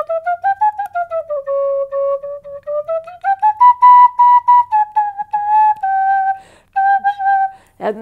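Green plastic children's penny whistle playing a short tune of separately tongued notes, climbing to its highest note about halfway through and then stepping back down to end on a held lower note shortly before the end.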